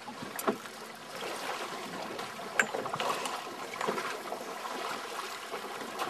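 Water slapping and lapping against the hull of a small boat at sea, an irregular splashy wash, with two sharp knocks, one about half a second in and a louder one a little before the middle.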